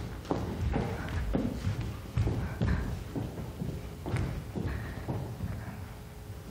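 Footsteps thudding on a wooden stage floor, about two a second, as actors cross the stage.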